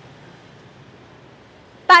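Faint, steady noise of street traffic from motorbikes and cars on a busy road. A woman starts speaking near the end.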